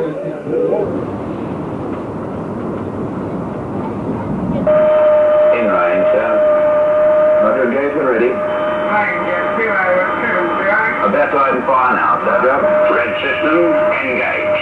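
A steady rushing noise, then after about five seconds a sudden switch to a television film soundtrack: voices over a steady high tone.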